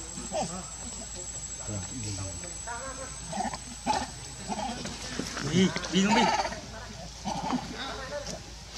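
Baby macaque crying out in a series of short, wavering calls, loudest about five to six seconds in.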